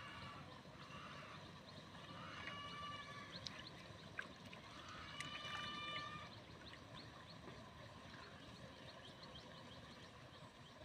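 Faint open-air background with two drawn-out distant calls, each lasting nearly a second and holding a steady pitch, the first about two seconds in and the second about five seconds in. Small scattered ticks and a low steady rush lie beneath.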